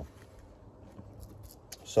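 Faint handling noise from small pieces of outdoor kit being handled: light rustling with a few small clicks, and a sharper click near the end.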